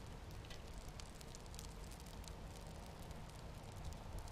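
Faint crackling and hiss of used motor oil burning in a homemade waste oil burner: many small scattered crackles over a steady low hiss.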